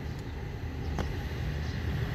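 Steady low outdoor rumble with no clear pitch, and a single short click about halfway through.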